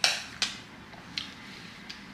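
Utensil clinking against a dish while eating: four sharp clicks, the first the loudest.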